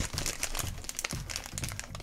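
Shiny black plastic blind bag crinkling and crackling in the fingers as it is opened and rummaged for the small figure inside, a quick, irregular run of small crackles.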